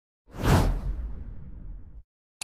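A whoosh sound effect starting about a quarter second in, loudest at its start, then trailing off into a low rumbling tail that cuts off suddenly.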